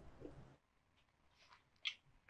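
Near silence between lines of dialogue, with one short faint sound near the end.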